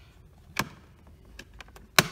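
Clicks of the Wink Relay's back cover being pried up by hand. There is one click about half a second in, a few light ticks, then a sharp, loud snap at the very end.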